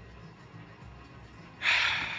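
A person's sudden, loud, breathy gasp about one and a half seconds in, fading over about half a second, against faint arcade background noise: a reaction to a claw machine try that is failing.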